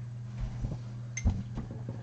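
A spoon clinking once against a glass jar of homemade jelly about a second in, with a couple of soft knocks, over a steady low hum.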